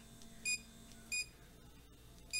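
Two short electronic beeps, about two-thirds of a second apart, from the button of an electric blackhead-removal device as it is pressed while being switched off. A faint hum from the device stops at the second beep.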